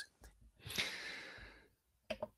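A man's sigh: one breathy exhale about a second long that fades away.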